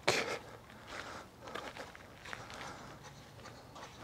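Faint, irregular footsteps on grass.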